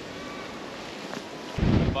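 Low, even outdoor hiss, then from about one and a half seconds in, loud wind buffeting the microphone.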